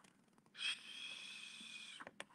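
A faint breath through the nose: a short sniff-like onset about half a second in, then a steady exhale with a thin high whistle.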